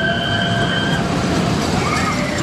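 Steel Venom's Intamin Impulse coaster train running down its steel track from the top of the vertical spike, a loud steady rumble. A high held note rides over it until about halfway through, and another starts near the end.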